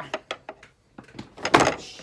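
Handling and movement noises as a person gets up from a leather office chair and moves away: a few sharp clicks and knocks, then a louder, longer scraping noise about one and a half seconds in.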